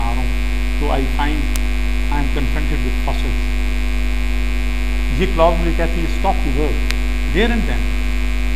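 Loud, steady electrical mains hum with many steady overtones, running under faint speech.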